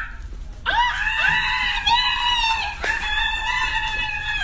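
Several high-pitched voices screaming excitedly together, long held shrieks that begin under a second in and keep going.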